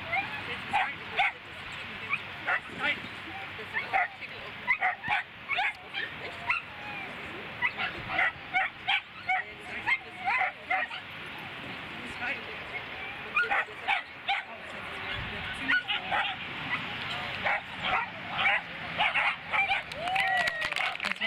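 Pyrenean Shepherd barking in short, high yips over and over as it runs, with a brief lull a little past halfway.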